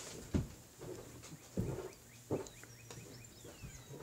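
Three soft thumps and rustles of hands and clothing as a person signs with quick arm movements, the first about a third of a second in. Faint high chirps come in the middle, over a low steady hum.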